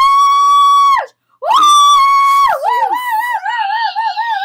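A child's voice shrieking, very loud and high: one long held note that breaks off about a second in, a brief silence, then a second long high shriek that turns into a wavering, warbling note.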